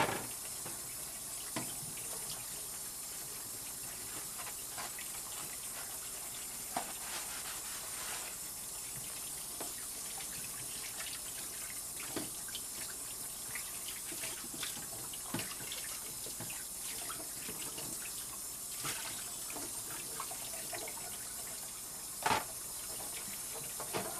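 Kitchen tap running steadily into a sink. Occasional short, light clinks and knocks come from things being handled in the sink.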